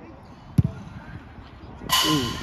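A football being kicked: a single sharp thud about half a second in, against low outdoor background noise.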